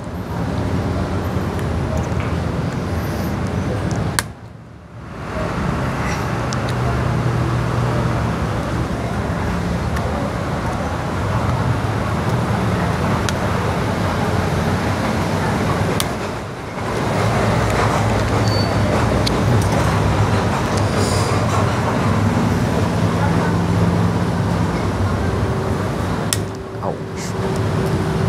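Steady road traffic with the hum of vehicle engines, dropping away briefly about four seconds in and dipping again about halfway through.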